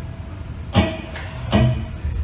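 A few drum and cymbal hits from a live band's drum kit, about three strikes, the middle one a bright cymbal wash and the last with a low thump, over a low hum from the amplifiers, in a gap where the guitars are silent.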